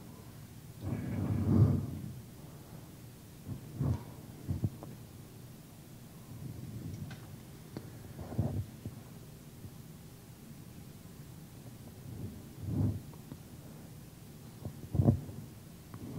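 Quiet room tone broken by a brief muffled voice-like sound about a second in, then about five soft low thumps spaced a few seconds apart.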